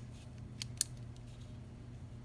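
Marker pen tip scratching a short mark onto corrugated cardboard at the edge of a steel ruler: a couple of quick, faint scratches a little over half a second in, over a low steady hum.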